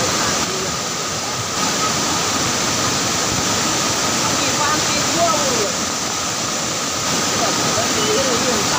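A flooded river in spate, thick with mud, sand and stones, rushing past steadily at close range.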